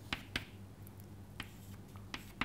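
Chalk tapping and scraping on a chalkboard as symbols are written: four faint, sharp clicks spread over two seconds.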